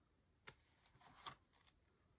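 Near silence, with one faint click about half a second in and a soft rustle about a second later as a spiral-bound paper journal is handled and laid flat on a cutting mat.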